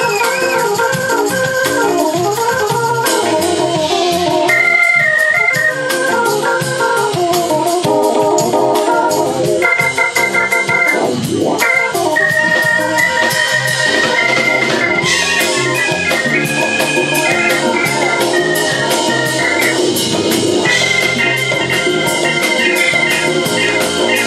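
Live jazz-funk keyboard solo on an organ sound: quick melodic runs and held notes over the band's drums, with cymbal ticks keeping time.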